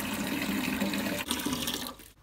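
Water from a wall tap running steadily into a plastic watering can in a steel sink. It cuts off suddenly near the end as the tap is closed.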